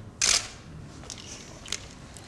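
Still-camera shutters clicking: one loud shutter release about a quarter of a second in, then two fainter clicks later.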